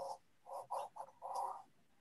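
A person's voice coming through a video-call link muffled and garbled, in a few short choppy bursts with a thin, narrow sound.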